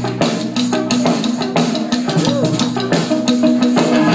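Live indie rock band playing: electric guitars and bass holding chords over a steady drum-kit beat.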